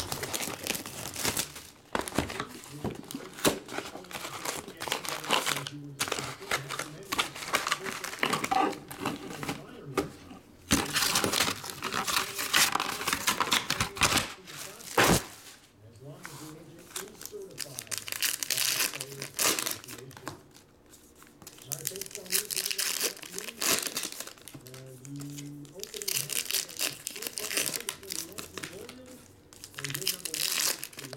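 Plastic shrink wrap and foil trading-card packs crinkling, rustling and being torn open by hand, in irregular bursts with short pauses.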